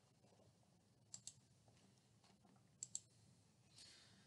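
Two quick double clicks of a computer mouse, about a second and a half apart, over near silence.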